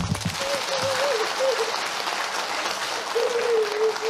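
Audience applauding steadily, with a faint wavering voice crying out over it twice.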